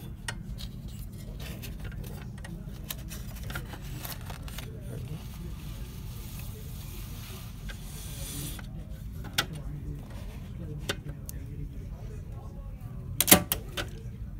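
Label paper sliding and small plastic and metal clicks from the guides of a Zebra ZT410 label printer as label stock is threaded under the printhead, over a steady low hum. A quick run of sharp clicks comes near the end.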